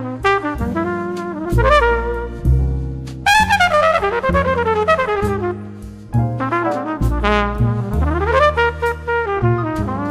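Jazz quintet: a trumpet plays a flowing line with some sliding notes over bass and drums, with cymbal strikes throughout.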